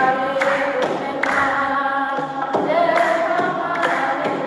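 A woman singing an Ethiopian Orthodox mezmur, a hymn to the Virgin Mary, through a microphone, holding long sung notes.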